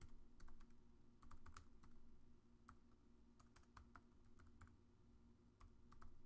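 Faint, irregular keystrokes on a computer keyboard as an email address is typed, over a faint steady low hum.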